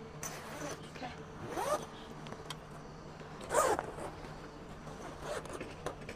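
Zipper joining the fabric side and front panels of an RV awning tent being pulled in a few short runs, each rising in pitch. The loudest run comes about three and a half seconds in, and another about one and a half seconds in.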